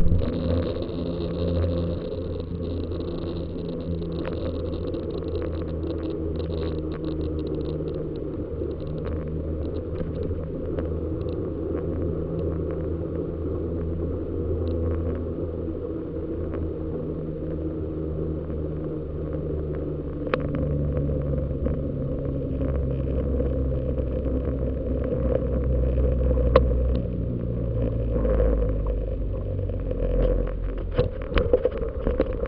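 Steady rumble of a bicycle rolling along an asphalt road, heard from a bike-mounted camera: tyre noise and wind on the microphone. It grows a little louder in the second half, and a few knocks come near the end as the bike reaches a rougher surface.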